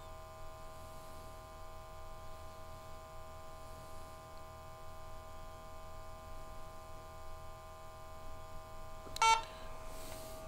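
A faint steady hum, then about nine seconds in a single short electronic beep from the SENSIT GOLD G2 gas detector, signalling that its propane LEL calibration has been saved.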